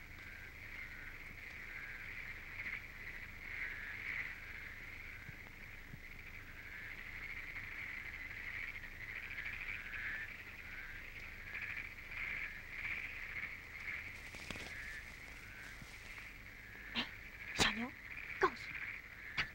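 A dense, continuous night chorus of frogs calling, many high-pitched warbling voices overlapping, with a few sharp louder sounds near the end.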